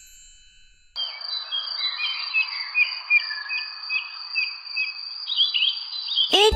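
Nature ambience of birds chirping: short, repeated chirps about twice a second over a steady background hiss, starting suddenly about a second in. Before it, the tail of a chime fades out.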